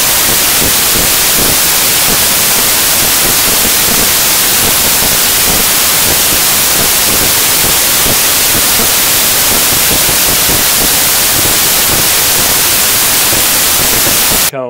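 Loud, steady static hiss, like white noise, swamping the sound track: an audio glitch in the recording.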